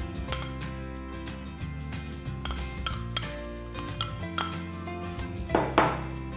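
A utensil clinking and scraping against mixing bowls as margarine is scraped out of a small bowl and stirred into flour. Scattered sharp clicks run through it, with a louder scrape near the end. Background music plays underneath.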